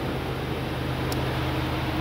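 A 2022 Ram 2500 Power Wagon's 6.4-liter Hemi V8 idling steadily and very smoothly, heard from over the open engine bay.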